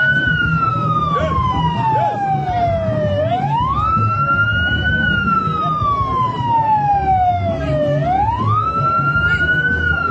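A wailing siren whose pitch climbs quickly and then sinks slowly, repeating about every four and a half seconds, with a crowd murmuring underneath.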